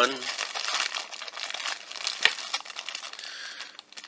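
Thin clear plastic bag crinkling and crackling as fingers work it open to free a small vinyl figure's pieces. A single sharp click comes a little past two seconds in.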